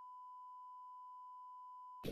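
A steady, quiet 1 kHz reference test tone, one unwavering beep-like pitch, played with a colour-bar test card. It cuts off abruptly at the end.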